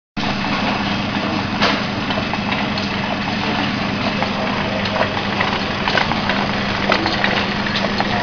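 Liquid pouch packing machine running: a steady motor hum with scattered light clicks and knocks from its mechanism.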